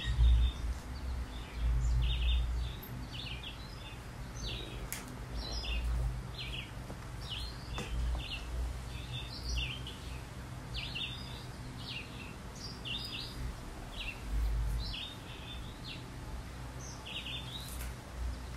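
Small birds chirping outdoors, short high chirps repeated every second or so, over a low rumbling background noise that swells a few times.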